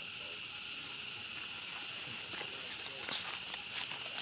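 A steady, high-pitched drone of insects, with rustling and crackling clicks of twigs and leaves growing louder in the second half, as a young macaque climbs about on a thin branch.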